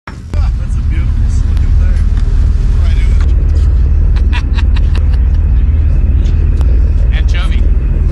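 Loud, steady low rumble on the deck of a fishing boat at sea, with a few sharp clicks over it.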